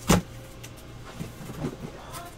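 A single sharp knock at the start, followed by a few softer taps and rustles, typical of cards and packs being handled on a table.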